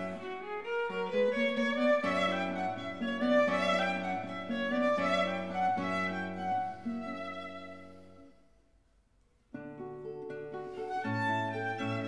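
Violin and guitar duo playing a classical rondo in D major. About eight seconds in the sound dies away to near silence, and about a second and a half later both instruments come back in together.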